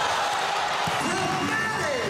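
Basketball game sound in an arena: steady crowd noise with a ball bouncing on the hardwood court.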